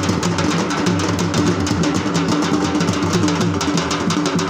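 Fast dhol drumming, dense rapid strokes in a steady rhythm, with a low pitched melodic line underneath.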